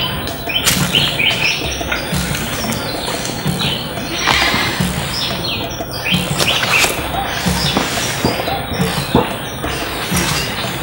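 Background film music with a steady beat of about one low thud a second, with birds chirping over it.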